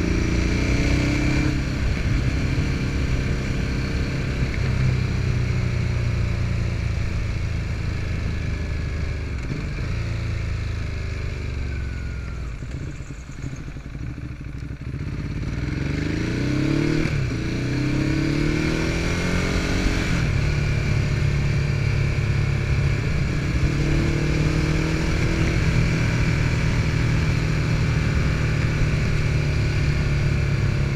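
Ducati Hypermotard's L-twin engine running on the move, with wind noise on the rider's chest microphone. About halfway it eases off and slows, then pulls away with several rising sweeps in pitch as it accelerates up through the gears, and settles into a steady cruise.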